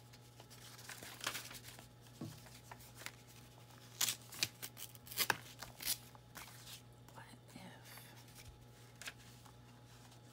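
Loose paper pieces being handled by hand: rustling, sliding and being pressed flat, with a cluster of sharp crinkles and taps in the middle.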